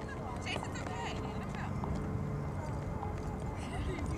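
Outdoor ambience on a camcorder microphone: a steady low rumble with faint, distant voices.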